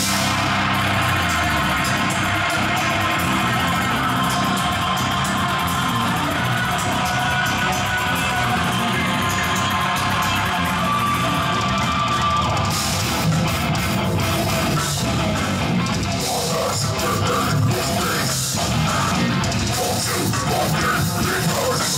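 A death metal band playing live: heavily distorted electric guitars, an extended-range bass guitar and a drum kit, steady and loud throughout. The top end turns brighter and busier about two-thirds of the way through.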